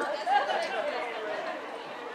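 People talking in the background: indistinct chatter of voices, clearest early on and then fading to a low murmur.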